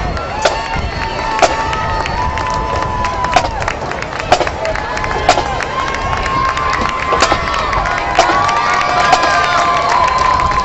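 Crowd cheering and yelling, many voices holding long shouts, with sharp hits about once a second.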